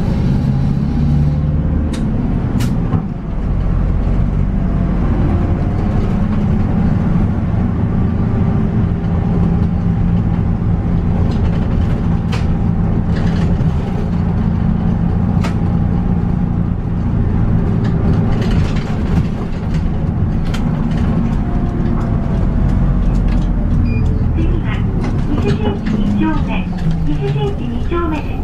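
Diesel city bus engine running as the bus drives along, heard from inside the cabin, with occasional clicks and rattles. Near the end the engine note changes as the bus slows toward a red light.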